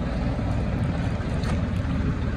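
Swaraj 969 FE tractor's diesel engine running steadily under heavy load while it drags a large tree stump across wet paving.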